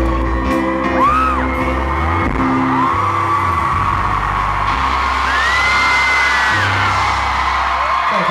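Live band holding the closing chords of a pop ballad while fans scream and whoop in high, swooping cries. Crowd cheering builds over the music in the second half.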